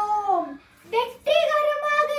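A young girl's voice declaiming a speech, her pitch falling on one word, then a long drawn-out vowel held through the second half.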